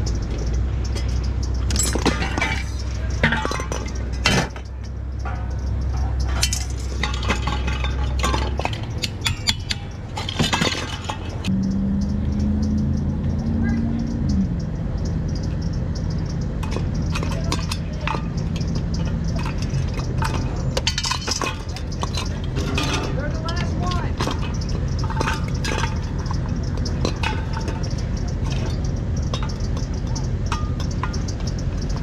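Scattered metal clinks and taps as a screwdriver works on the steel housing of a ceiling fan motor being stripped for scrap. A steady low drone runs underneath and drops out about a third of the way in, replaced by a different low steady hum.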